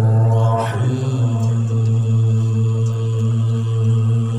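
A male qari reciting the Quran in melodic tilawah style: a brief ornamented turn of the voice, then one long low note held steady.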